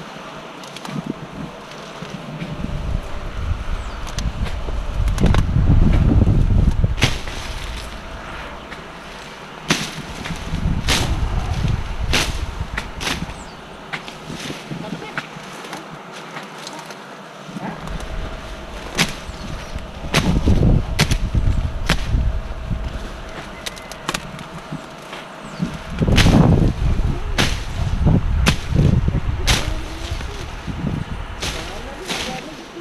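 Dense vines and brush being pushed through and cut: rustling and snapping foliage with sharp cracks, several in quick clusters, over a low rumble that swells and fades.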